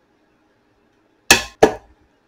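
Super-capacitor spot welder, switched by a solenoid, firing a weld onto 18650 lithium-ion cells: two sharp cracks about a third of a second apart, each dying away quickly.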